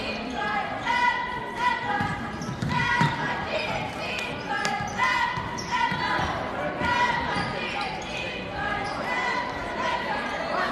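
Basketball game play on a hardwood gym floor: the ball being dribbled and sneakers squeaking in short repeated chirps, with indistinct voices, all echoing in a large gym.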